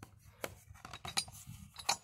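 Three short, light metallic clicks, roughly three-quarters of a second apart, from a bare two-stroke cylinder and its parts being handled.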